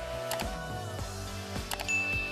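Background music with a steady beat, with two mouse-click sound effects, one about a third of a second in and one near the end. A short high ding follows the second click.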